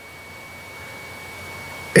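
A steady faint high-pitched whine, one constant tone with a light hiss beneath it, left in the recording during a pause in speech.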